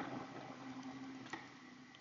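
A few faint keyboard clicks as a short word is typed, over a low steady room hum.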